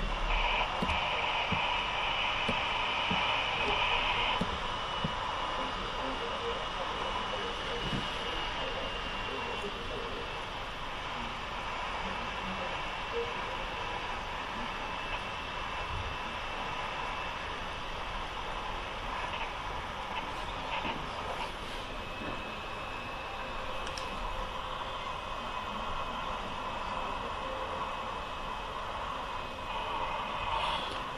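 Steady road and tyre noise heard inside a car's cabin while cruising at about 108 km/h on wet asphalt, with a thin high tone running through it that is stronger for the first four seconds.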